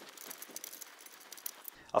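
Faint, scattered light clicks and clinks of small metal hardware handled at the CNC's belt clamping plate and its bolts.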